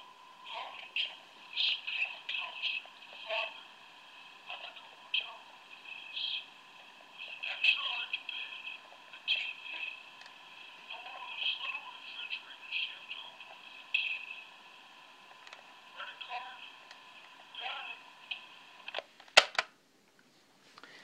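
Talkboy cassette recorder playing back recorded movie dialogue at its slowed speed through its small speaker: tinny, drawn-out voices that can't be made out, over a faint hiss and a steady thin tone. A sharp click comes near the end.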